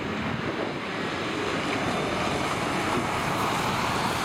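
Several small hatchback autograss race cars running on a dirt track, their engines and tyres growing louder as they come round the bend toward the microphone. Wind on the microphone adds a steady rush.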